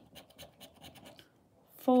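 A plastic poker chip's edge scratching the coating off a scratch card in quick, short strokes, stopping about a second and a half in.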